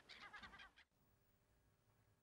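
Small birds chirping in rapid, repeated high notes, cut off abruptly just under a second in, followed by near silence.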